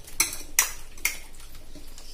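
Raw chicken pieces being turned and mixed by hand in a stainless steel bowl, with three sharp clinks against the metal bowl in the first second or so.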